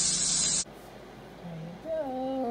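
Food sizzling on an electric tabletop grill plate: chicken skewers, pineapple rings and salmon give a steady, loud hiss that cuts off suddenly about half a second in, leaving quiet room tone.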